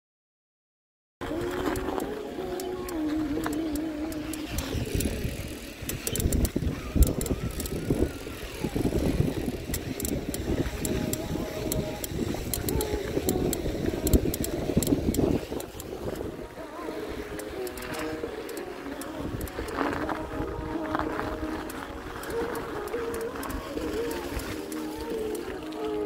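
Background music with held and wavering notes, starting about a second in. From about five seconds to sixteen seconds, heavy wind rumble buffets the microphone during a bicycle ride on packed snow.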